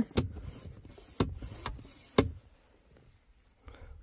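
Beckson Thirsty Mate hand bilge pump being worked, with about four sharp plunger strokes roughly half a second to a second apart, pumping water out from under the canoe's rear airbag.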